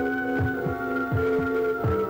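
Horror film score: a slow heartbeat of paired low thumps, about three beats, under sustained organ chords that shift to a new chord near the end.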